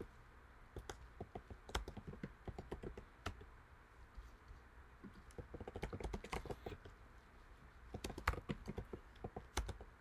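Typing on a computer keyboard: irregular runs of quick keystrokes, with a lull a little before the middle.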